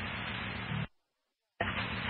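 Scanner radio static between transmissions: a steady hiss that cuts off sharply about a second in as the channel closes, then silence, then the hiss returns near the end as the next transmission keys up.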